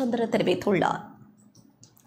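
A woman's voice reading the news, ending about a second in, followed by a short near-quiet gap with a few faint clicks.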